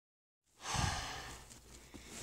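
A person's breathy exhale close to the microphone, starting about half a second in and fading away over the next second.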